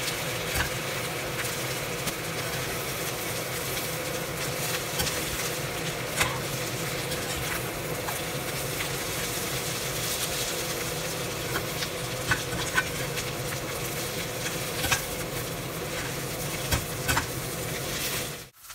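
Bubble and squeak (mashed potato and Brussels sprouts) frying in a hot spun iron pan with a steady sizzle. Scattered short scrapes and taps come from a metal slotted spatula turning the mix.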